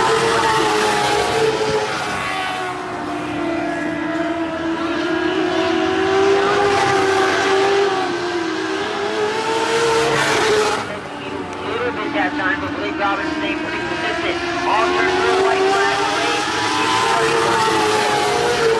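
Dirt-track race cars running flat out in the feature, their engines holding a steady high note that sways down and up as they go through the turns. A brief louder rush of engine and tyre noise about ten seconds in, as a car passes closer.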